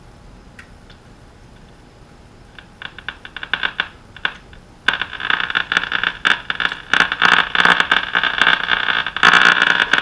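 Crackling, buzzing noise from the speaker of an early-1930s Silvertone 1704 tube radio as its line voltage is raised: faint crackles start about three seconds in, turn into a loud steady noise about five seconds in, and grow louder again near the end. The restorer suspects interference picked up on the antenna lead and likens it to a dimmer switch.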